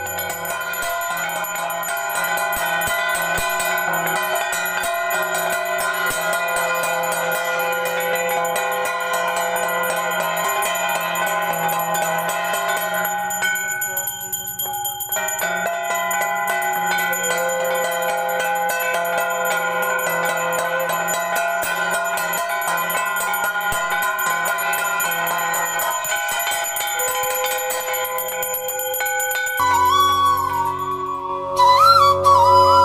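Brass hand bell and brass kansar gongs beaten with sticks, a continuous dense metallic clanging with rapid strikes. It thins briefly about halfway through.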